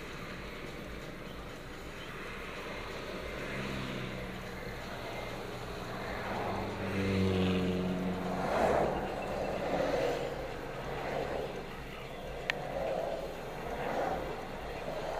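Car in motion heard from inside the cabin: steady road and tyre noise, with an engine note swelling for a few seconds around the middle. One sharp click comes near the end.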